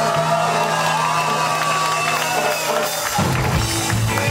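Live rock band playing on stage: a long held chord over a sustained bass note, then the drums come back in about three seconds in.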